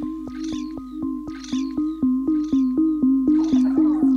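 Electronic music from a live laptop and mixer set. A low two-note synth figure alternates under a clicking beat of about four a second, with a short bright sampled sound about once a second. The beat grows louder about halfway through.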